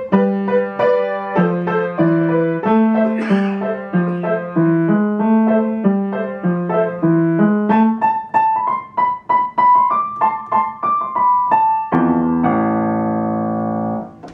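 Upright piano being played: a melody over a repeating bass figure, moving up to higher notes about eight seconds in, then a final chord about twelve seconds in that rings on to the close of the piece.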